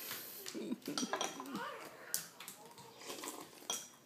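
About half a dozen sharp clinks with a brief high ring, the loudest near the end, like dishes or cutlery being handled, with a small child's voice vocalizing between them.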